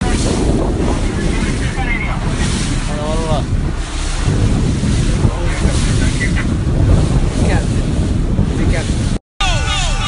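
Wind buffeting the microphone over the rush of water around a boat under way, a steady heavy noise. The sound drops out briefly near the end.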